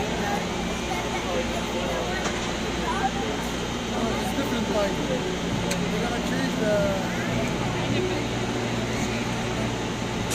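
Crowd of many voices chattering and calling out at once, echoing in a large indoor arena, over a steady low mechanical hum.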